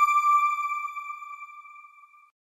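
A single electronic chime note, already sounding at the start, ringing and fading steadily away over about two seconds: the sound logo of a TV channel's end card.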